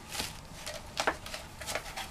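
A large sheet of paper, a rolled dust jacket, rustling and crackling in a few short crackles as it is unrolled and handled.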